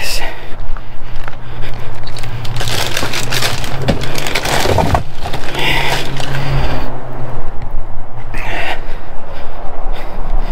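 Plastic garbage bags and salvaged items being grabbed and handled, with rustling and knocking in bursts. A steady low hum runs underneath and stops about nine seconds in.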